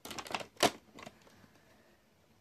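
Rustling and sharp clicks of handling noise close to the phone's microphone, a quick run of them in the first second with the loudest about two-thirds of a second in.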